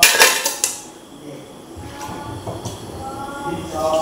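Metal cooking pots clanking and knocking together as they are washed by hand, with a loud cluster of clanks in the first half-second, then quieter scattered knocks.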